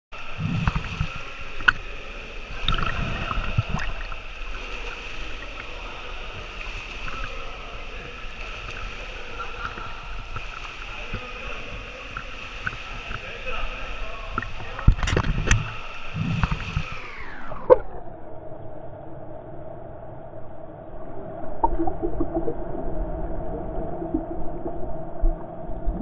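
Pool water lapping and splashing against a waterproofed action camera at the surface of an indoor pool, in several low surges over a steady echoing hum, with a few sharp knocks on the housing. A little before 18 s the whole sound slides down in pitch and turns duller.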